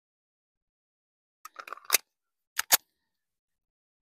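A handgun being handled as it is raised to aim: a quick cluster of small clicks and knocks about halfway through, then two sharp clicks close together. These are not a gunshot.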